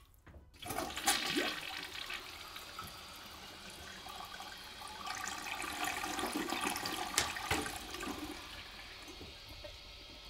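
A toilet flushing: a rush of water starts suddenly about a second in, swells again a few seconds later, then fades as the cistern refills.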